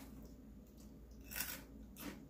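A snack bag crinkling once, briefly and faintly, about one and a half seconds in, as a piece of cereal snack is taken out of it.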